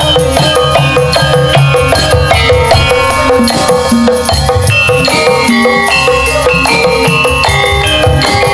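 Javanese gamelan ensemble playing: bronze saron metallophones strike a steady stepping melody of ringing notes over kendang hand-drum beats.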